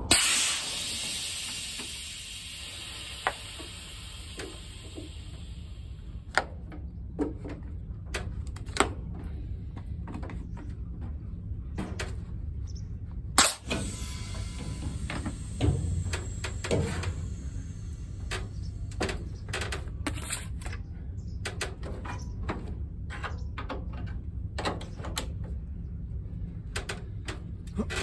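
Compressed air hissing out of an articulated lorry's trailer air line couplings as they are disconnected. A loud hiss fades over several seconds, a second sharp release and hiss come about halfway through, and clicks and knocks of the couplings being handled sound over a steady low rumble.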